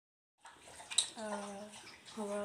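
A boy's voice holding a short, steady hum or drawn-out vowel for about half a second, just after a single click about a second in.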